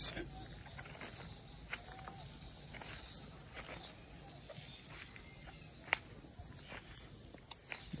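Insects chirping steadily in a high, evenly pulsing trill, with a few faint clicks.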